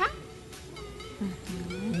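Soft background music during a pause in speech, with a brief low murmured hum from a voice, like an 'mm-hmm', in the second half.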